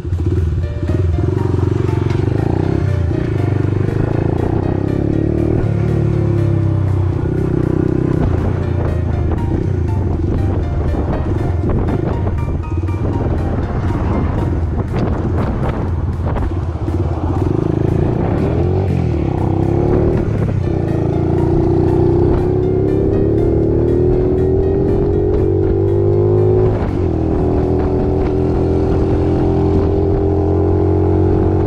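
An 88cc custom Honda Monkey's four-stroke single-cylinder engine running under way through a loud muffler. Its pitch climbs as it accelerates over the last ten seconds, with a brief dip near the end.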